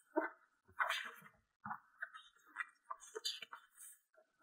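Faint handling of a stamp album as its pages are turned: paper rustling about a second in and again just past three seconds, with soft scattered rustles between.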